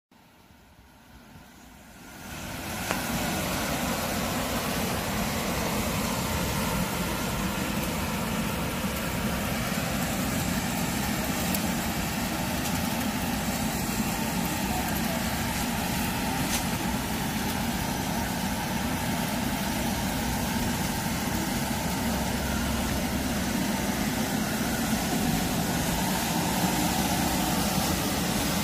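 Tenax Maxwind battery-electric walk-behind sweeper running steadily as it sweeps leaves off asphalt, its motors, suction fan and rotating side brushes making a steady whirring hum with a hiss above it. It comes on about two seconds in.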